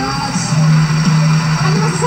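Upbeat celebratory show music with held bass notes, heard through a TV speaker.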